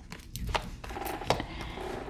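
Tarot cards being handled and counted by hand, with a few short clicks and taps of the cards against each other and the table.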